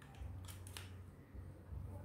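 Two sharp clicks in quick succession about half a second in, over a faint low rumble.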